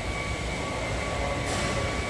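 Steady low rumble of gym background noise with a faint steady hum, and a brief soft scuff about one and a half seconds in.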